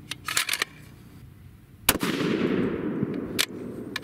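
A single shot from a custom 7mm PRC bolt-action rifle with a three-port muzzle brake, about two seconds in, sharp and loud, followed by a rumbling tail lasting about a second and a half with a second sharp crack in it. A few light clicks come before the shot and again at the very end.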